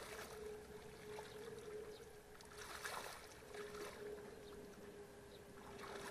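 A person wading through shallow muddy water, each stride a soft slosh, with louder sloshes about halfway through and near the end. A steady faint hum runs underneath.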